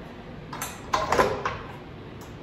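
A few short knocks and clunks, about half a second to a second and a half in, as the tilt-head stand mixer is handled; its motor is not yet running.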